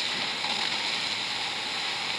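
A steady hiss with no distinct events.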